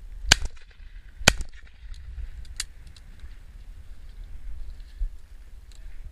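Two shots from a Browning 525 over-and-under shotgun, the barrels fired one after the other about a second apart, followed by a fainter shot. Wind rumbles on the microphone throughout.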